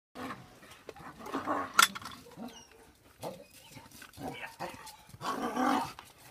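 A working dog barking in short, irregular bursts, the loudest a little after five seconds in.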